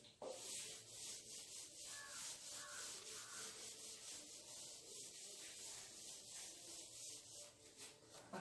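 Whiteboard being wiped clean, a faint, steady rubbing of repeated back-and-forth strokes starting about a quarter second in.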